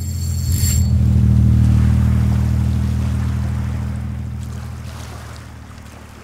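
Logo-sting sound effect: a brief high shimmer about half a second in, over a deep, steady rumbling drone that swells for about a second and a half and then slowly fades away.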